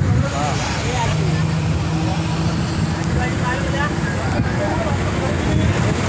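Road and engine noise of a moving vehicle: a steady low rumble with a faint engine hum, and voices talking in the background.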